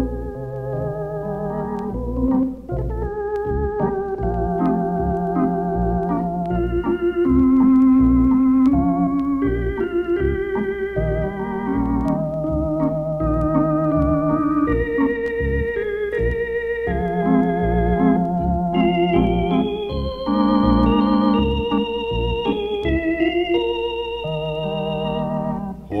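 Electronic organ playing an instrumental passage on a 1973 LP: a melody with vibrato over sustained chords and a moving bass line. A man's singing voice enters right at the end.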